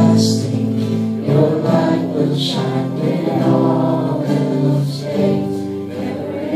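A live worship band playing, acoustic guitars and drums under a male lead singer, with many voices singing along.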